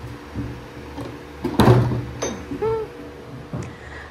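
Steady hum of electric barn stall fans, broken about a second and a half in by a sudden loud noisy burst of about half a second, with a faint brief pitched sound just after.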